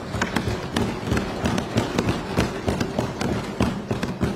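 Many legislators thumping their desks at once: a dense, irregular patter of knocks. This is desk-thumping applause, approval of a budget allocation just announced.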